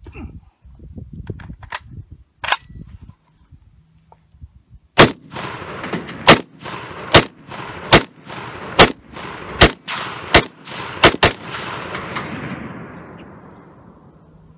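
PTR-91, a semi-automatic .308 Winchester clone of the HK91, firing nine single shots a little under a second apart, the last two in quick succession, with a rolling echo between shots that dies away about two seconds after the last. Before the first shot there are handling noises and a couple of sharp clicks as the rifle is picked up and readied.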